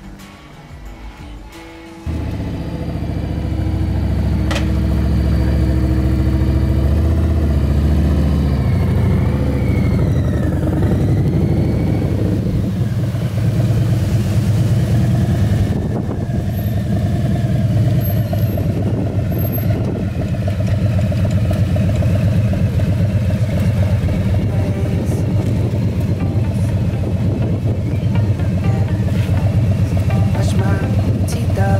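Harley-Davidson Road King's V-twin engine running on a test ride. It comes in suddenly and loud about two seconds in, with rises and falls in pitch as the throttle changes.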